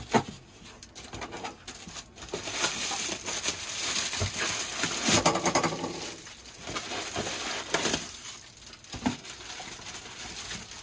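Plastic bubble wrap crinkling and crackling as it is handled and pulled out of a cardboard box, loudest in the middle, with a sharp tap just after the start and scattered small clicks.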